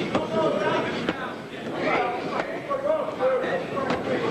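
Four sharp slaps of boxing gloves landing punches at close range, about a second apart, under shouting voices from the ringside crowd.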